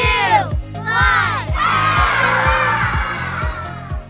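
Children's voices calling out a countdown, one call about a second, then joining in one long group shout, over upbeat children's music with a steady drum beat.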